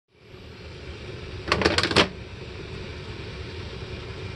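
Wooden kitchen corner-cabinet door being opened: a quick run of five or six clacks about a second and a half in, the last the loudest, over a steady low hum.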